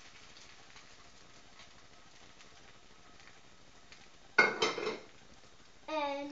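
Egg and buttered bread frying faintly in a cast-iron skillet. About four seconds in comes a sudden clatter of two quick knocks, a glass bowl being set down on the counter.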